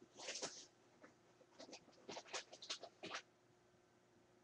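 Faint scratchy rustling in short bursts, a cluster at the start and a run of them in the middle: newborn puppies shuffling and nursing against their mother on a blanket.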